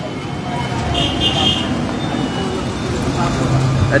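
Street traffic noise with vehicle engines running nearby, and a brief high steady tone about a second in.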